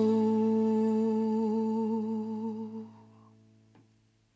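End of a ballad: a singer holds the final word 'soul' as one long note with a slight vibrato over a steady low accompaniment note. The voice fades out about three seconds in and the low note dies away just after it.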